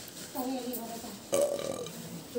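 Two short non-word vocal sounds from a person. The first lasts about half a second; the second starts suddenly just past the middle.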